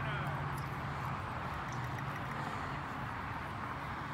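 Outdoor ambience of indistinct voices chatting in the background, over a steady low hum that fades out about two and a half seconds in.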